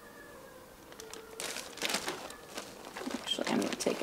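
Clear plastic bag of breadcrumbs being handled, crinkling and rustling in quick, irregular bursts that start about a second and a half in and grow louder toward the end.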